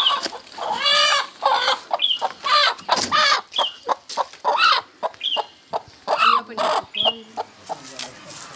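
Domestic chicken cackling loudly in alarm. Runs of quick clucks each end in a higher drawn-out squawk, repeating about every one and a half seconds.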